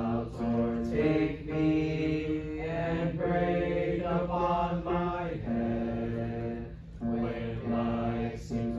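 Unaccompanied singing of a hymn melody, in long held notes that change pitch about once a second.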